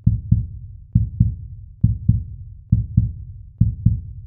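Heartbeat sound effect: five low double thumps (lub-dub), the pairs coming evenly a little under a second apart.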